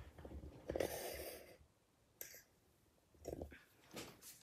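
Faint handling noise from a camera being moved and repositioned: soft rustles and bumps in the first second and a half, a single sharp click a little past two seconds, and another short rustle just after three seconds.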